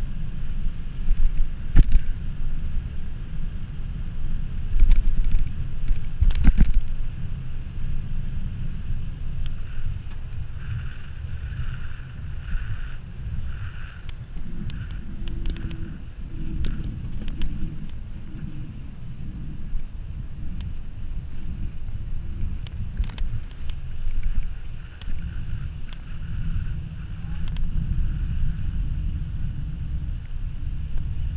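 Wind rushing over the microphone of a camera riding on a bicycle coasting fast downhill on a paved road, with a steady low rumble and a few sharp knocks from bumps in the road.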